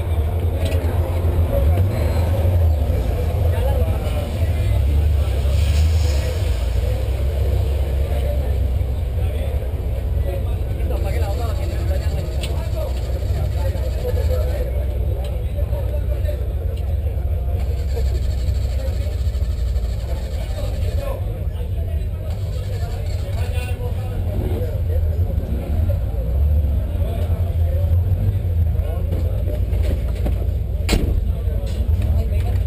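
A 1979 Volkswagen Golf GTI's four-cylinder engine idling as a steady low rumble, heard from inside the car's cabin, with people talking around it.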